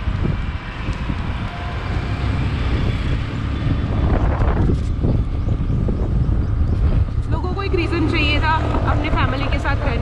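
Wind rushing over the microphone, with road and engine noise from a moving two-wheeler. A voice is heard briefly near the end.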